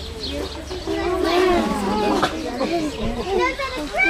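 Chatter of several voices talking over one another, children among them, loudest in the middle.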